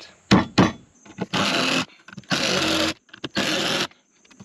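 Power drill/driver driving screws into a wooden post in three short trigger bursts of about half a second each, after two sharp knocks.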